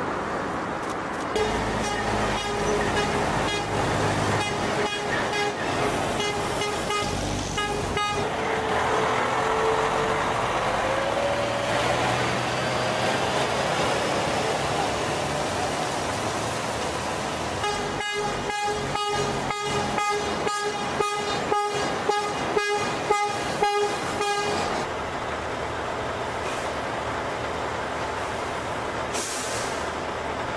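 Heavy trucks passing with their engines running, and horns sounding in quick repeated blasts, about two a second. The horns come in two long runs: several seconds near the start, and about seven seconds in the second half.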